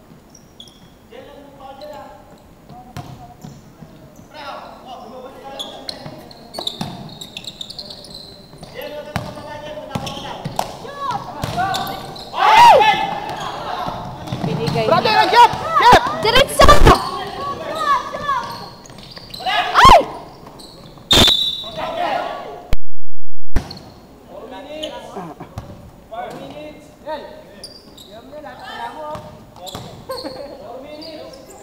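Basketball dribbled on a hardwood gym floor, with players' shouts and sneaker footfalls echoing in the hall; the bouncing and shouting grow loudest during a fast break a little before the middle. A brief loud glitch in the recording cuts in about two-thirds of the way through.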